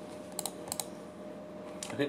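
Two sharp computer mouse clicks, each a quick press and release, about a third of a second apart, over a faint steady electrical hum.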